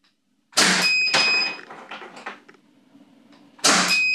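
Two shots from a CO2 airsoft pistol firing 11 mm projectiles, about three seconds apart, each a sharp pop. A further knock comes just after the first shot. Each shot is followed shortly by a short, high electronic beep from the chronograph as it registers the shot.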